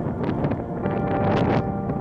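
Wind buffeting the microphone, a rough rushing noise that swells to its loudest about one and a half seconds in, over soft background music with long held notes.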